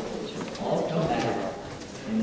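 Indistinct speech: a voice talking, but the words cannot be made out.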